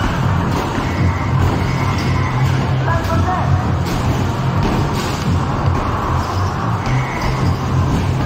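Music playing alongside repeated knocks of basketballs hitting the backboard and rim of a basketball arcade machine and dropping back onto its ramp, with voices in the background.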